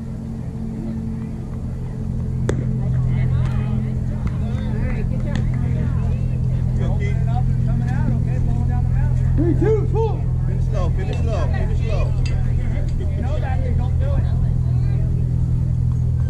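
Voices of players and spectators calling out at a baseball field over a steady low hum, with one sharp knock about two and a half seconds in.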